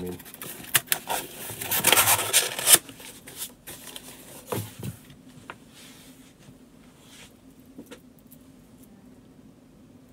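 Small cardboard shipping box being folded and handled: rustling and scraping of cardboard for the first few seconds, loudest around two seconds in, then a few light taps and knocks as it is set down and worked on the counter.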